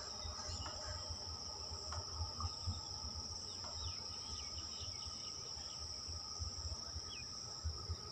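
Insects trilling in one steady, high-pitched drone, over a low, fluttering rumble and a few faint chirps.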